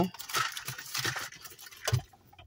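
Rustling and small clicks of earbuds being taken out and handled close to the microphone, with one sharper click near the end.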